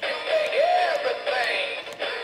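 Rocky Rainbow Trout animatronic singing fish plaque playing its song: a voice singing over backing music, its pitch swooping up and down.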